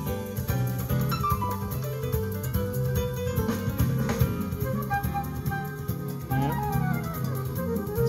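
Music from a CD playing through speakers fed by an MTX RT-X02A car-audio crossover, with a steady low bass line under higher melodic notes.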